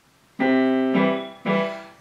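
Digital piano playing three sustained chords: the first starts about half a second in, a second at about one second, and a third at about one and a half seconds that fades away.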